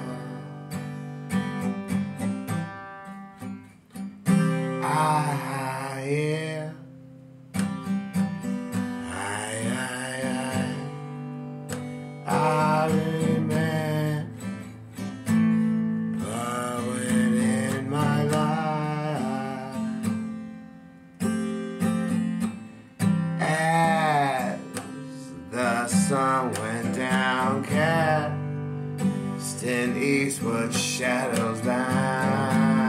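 Acoustic guitar strummed steadily while a man sings drawn-out phrases with a wavering pitch; the guitar plays alone for the first few seconds before the voice comes in.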